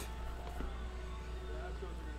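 Quiet room tone: a steady low hum, with faint voices in the background.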